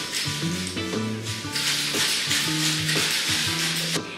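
Ice rattling in a metal cocktail shaker being shaken hard, over background music with a steady bass line.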